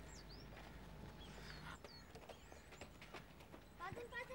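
Faint outdoor ambience: small birds chirping in repeated short high calls, with light footsteps and a football kicked once near the end.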